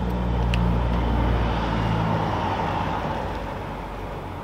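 A car passing nearby: a low engine hum with a rush of tyre noise that swells in the first second or so and then fades away.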